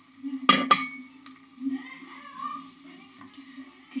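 A wooden spoon stirring beans and sausage pieces in a frying pan, with two sharp knocks about half a second in and softer scraping after.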